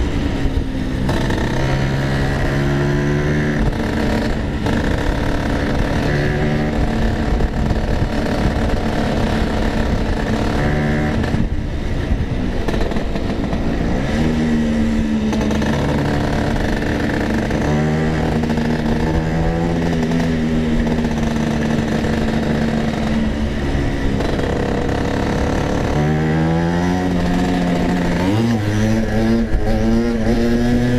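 Racing-tuned two-stroke Vespa scooter engine under way, its pitch climbing and dropping several times as it is revved through the gears and eased off, with a sharp climb near the end.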